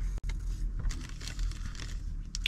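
Paper burger wrapper rustling and crinkling as a burger is handled and lifted, with a brief click near the start, over the low steady hum of a car interior.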